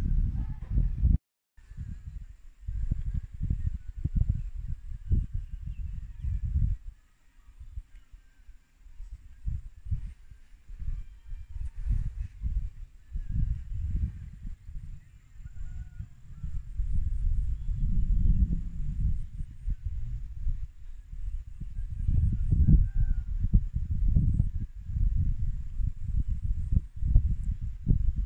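Wind buffeting the phone's microphone in irregular gusts, a low rumbling that swells and fades, with a brief dropout about a second in.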